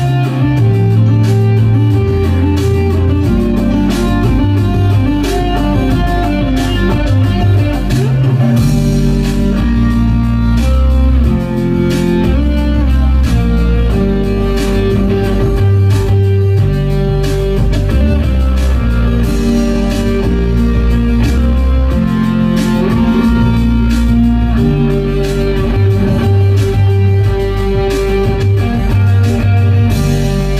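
Electric guitar played live: an instrumental melodic line over deep, sustained bass notes that shift about once a second.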